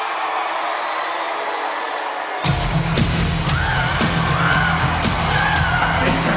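Arena crowd noise, then loud rock entrance music with a heavy beat starts suddenly about two and a half seconds in and plays over the crowd.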